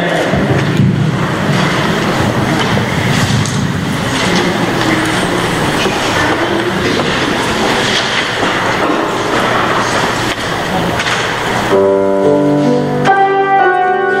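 A loud, even rushing noise fills most of the stretch. About twelve seconds in it gives way to a piano playing sustained chords, the introduction of a song.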